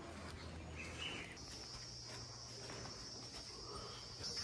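Faint forest ambience dominated by insects: a steady high-pitched insect drone sets in about a second and a half in and holds, after a brief, lower buzz just before it.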